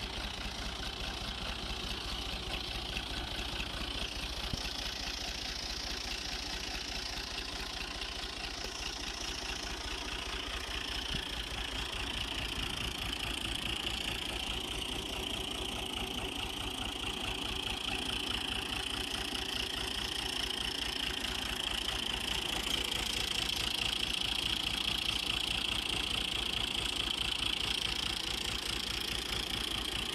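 1989 Fiat 480 Special tractor's three-cylinder diesel engine idling steadily.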